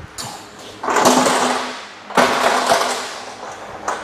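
Manual pallet jack being worked after it is set down: two rushing, hiss-like noises of about a second each, one right after the other, with a faint steady hum under them.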